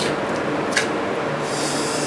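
Steady hum of the refrigerated wine cellar's cooling system, with two faint ticks and a short high hiss starting about one and a half seconds in.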